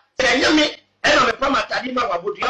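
A man's voice talking in short bursts.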